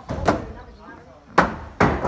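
Sharp wooden knocks on the timber frame of a wooden stilt house as the crew dismantles it and knocks its beams loose: three blows, the last two close together near the end.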